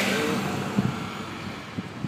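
Road and engine noise of a car driving slowly, heard from inside the car through an open window: a rushing swell at the start that fades over the first second into a steady low rumble.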